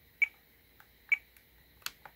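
Three sharp clicks, a little under a second apart, from the buttons of a TBS Tango 2 radio transmitter being pressed to step through its menus.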